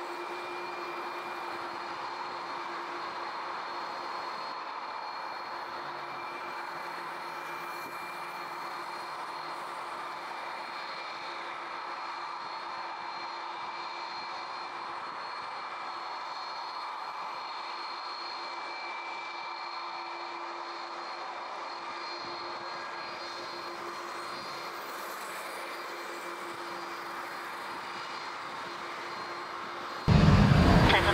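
Airbus A330-300's twin jet engines running at idle as it taxis slowly onto the runway to line up: a steady drone with a faint, steady whine.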